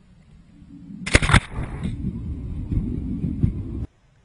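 Rumbling wind and snow noise on an action camera's microphone as it skims along the snow surface. A loud, sharp scraping burst comes about a second in, then bumpy rumbling that cuts off suddenly near the end.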